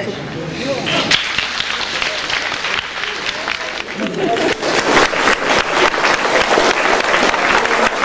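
Audience applauding, picking up about a second in and growing denser and louder from about four seconds in, with a few voices mixed in.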